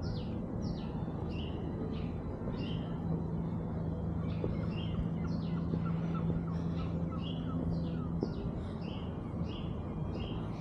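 Small birds chirping over and over, short downward chirps about two a second, above a low street rumble. A steady low hum joins in for a few seconds in the middle.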